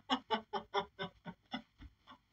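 A man laughing hard in a rapid run of short 'ha' pulses, about five a second, fading away and dying out near the end.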